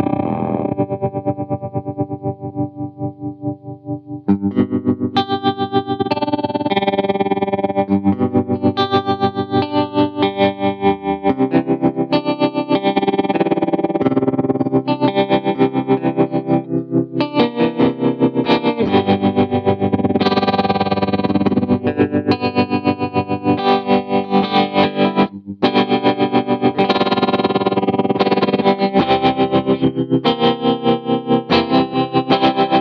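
Electric guitar, a PRS CE 24, played through a Lightfoot Labs Goatkeeper 3 tap tremolo/sequencer pedal with some distortion. The pedal chops the volume in an even rhythmic pulse. A chord dies away over the first few seconds, then steady playing resumes and runs on, with a brief gap a little after the middle.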